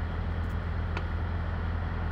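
Steady low rumble of idling semi-truck diesel engines, with a faint click about a second in.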